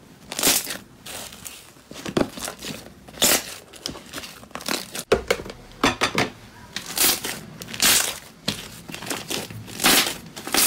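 Fluffy cloud slime being stretched and pulled apart by hand, giving a crinkly, crackling tearing sound in short bursts about once a second.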